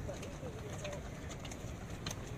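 Pigeons cooing in short, low, wavering notes, over light footfalls of people jogging on a rubber running track.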